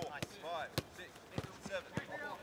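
Football being kicked on a grass pitch: several sharp thuds of passes, roughly one every half second to second, with players' short shouts between them.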